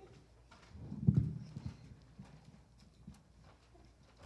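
A few dull knocks and thumps from microphone stands being handled and adjusted, picked up through the microphones, with a cluster of them about a second in.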